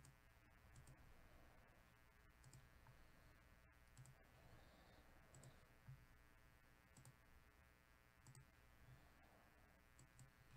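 Near silence broken by faint computer mouse clicks, about one every second and a half, six in all.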